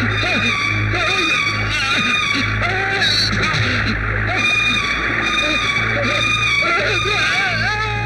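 A man screaming and howling, with no words, over loud dramatic film background music.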